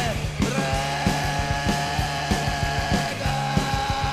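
Instrumental stretch of a hardcore punk song: a distorted guitar holds one long sustained note, stepping up slightly about three seconds in, over a steady bass line and drums beating about three times a second.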